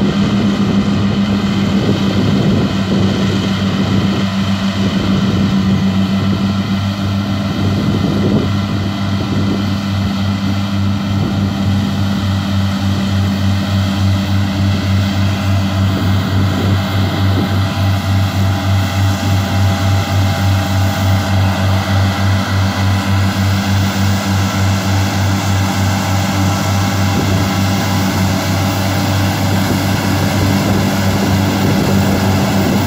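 Deutz-Fahr tractor engine running under load as it drives a Krone EasyCut front and side disc mower combination through standing grass: a steady, loud drone that takes on a regular pulsing, about twice a second, in the second half.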